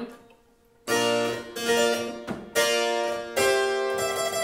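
Harpsichord playing four struck, sustained chords, one roughly every three-quarters of a second, after a brief silence. They realize a tied bass in B-flat major, where the held bass note forms an augmented fourth that goes with a major sixth.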